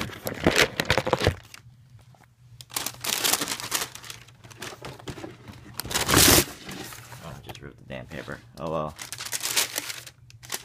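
A cardboard shoebox being pulled out and opened, with tissue paper rustling and crinkling in uneven bursts, loudest about six seconds in.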